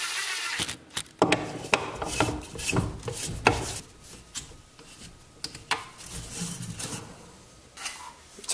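Power drill briefly driving a screw through a cast-iron faceplate into soft poplar end grain, the whir stopping about half a second in. It is followed by clicks, knocks and scraping as the faceplate and wooden block are handled and threaded onto the wood lathe's spindle.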